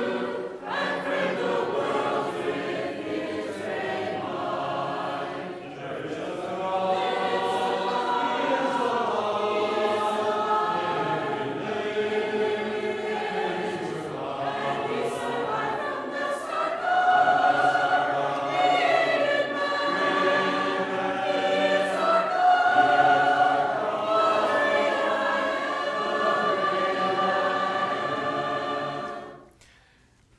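Church congregation singing a hymn together without instruments. The singing ends shortly before the end.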